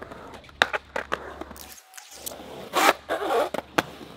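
Skateboard on a quarter pipe: a few sharp clacks of the board and wheels in the first second, then a louder scrape about three seconds in as the board slides along the coping, followed by more clacks.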